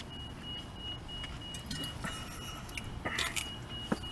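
A car's door-open warning chime beeping in a steady run, a sign that a car door has been left open. A few faint clicks come about three seconds in.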